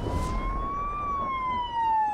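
A police car siren wailing: one slow rise and fall in pitch, topping out about a second in, over a low rumble.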